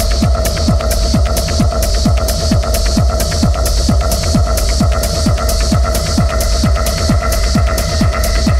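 Techno track in a DJ mix: a steady four-on-the-floor kick drum at about two beats a second, with hi-hats ticking between the kicks over a sustained synth drone.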